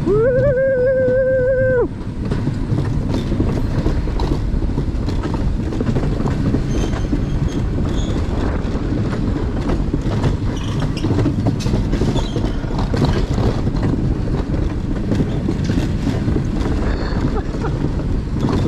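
A mountain-coaster sled running at full speed down its steel tube rails, ridden without braking: a steady rolling rumble of wheels on the track with faint rattling clicks. A long held shout of "yeah" from the rider fills the first two seconds.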